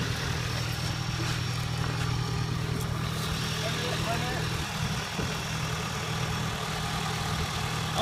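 An engine idling steadily nearby: a low, even hum that does not change.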